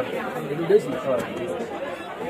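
Several voices talking over one another in background chatter, with no words clear.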